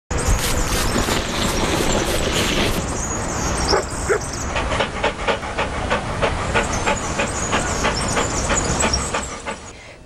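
Intro sound effects of a dog barking over a loud, noisy backing track. A steady beat of about three hits a second runs through the second half, and the sound fades out near the end.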